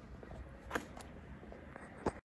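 Faint footsteps on brick paving over a low, steady rumble, with two sharper clicks a quarter second apart a little before a second in.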